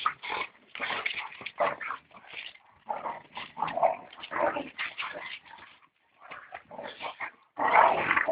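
Two boxer dogs play-fighting, making rough growling and grunting noises in irregular bursts, with short lulls about two seconds in and near six seconds and a louder burst near the end.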